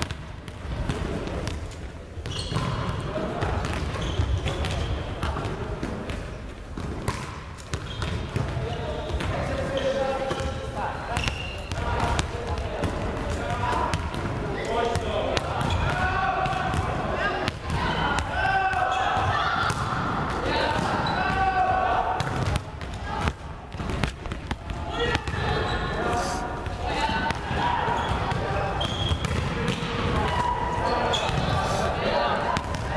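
Volleyballs being hit and bouncing on a sports-hall floor, many sharp thumps at irregular intervals, with indistinct chatter of young players throughout.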